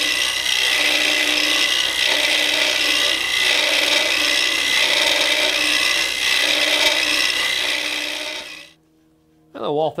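Carbide-tipped swan-neck hollowing tool scraping out the inside of a goncalo alves vessel spinning on a wood lathe at about 1500 RPM. It makes a steady scraping hiss that swells and eases about once a second with the back-and-forth strokes, and it cuts off suddenly near the end.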